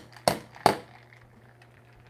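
Two sharp knocks on a metal cocktail shaker in the first second, as a stuck shaker is struck to break its seal and free the lid.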